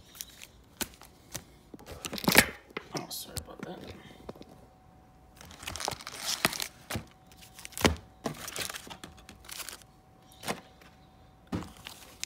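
Foil-wrapped trading card packs crinkling and clicking in short, irregular bursts as they are handled and stacked on a table. A sharper knock comes about two seconds in.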